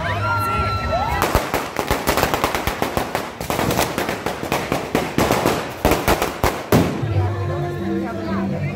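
String of firecrackers rigged on a bonfire monument going off in a rapid run of sharp bangs, many a second, starting about a second in and stopping about seven seconds in.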